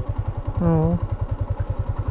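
Yamaha Sniper 150's single-cylinder four-stroke engine idling steadily with an even, rapid low pulse, heard from the rider's seat.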